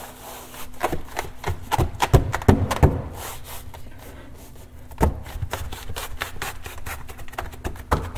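Hands pressing and pushing a carpet-style bed mat down onto hook-and-loop strips on a pickup bed floor, so the hook-and-loop catches and the mat seats. Irregular dull knocks and rubbing, heaviest about two to three seconds in, with one sharp knock about halfway through.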